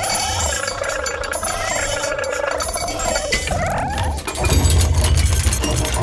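Electroacoustic musique concrète built from kitchen sounds: wavering pitched tones with scattered clinks, joined about four seconds in by a louder low drone.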